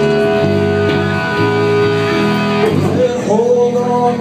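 Live rock band playing an instrumental passage: electric guitar and bass holding chords over drums, moving to a new held chord near the end.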